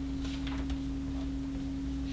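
A steady single-pitched electrical tone with a low hum beneath it, unbroken throughout, over faint room noise.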